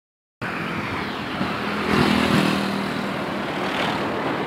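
Road traffic noise: vehicle engines and tyre rumble, with one engine growing louder around two seconds in.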